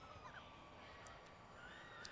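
Near silence, with a faint thin whine in the background.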